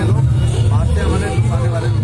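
A man talking into a close microphone over a loud, steady low hum.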